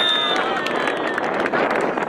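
Players shouting on the football pitch, with the tail of a high, steady referee's whistle blast that stops about a third of a second in.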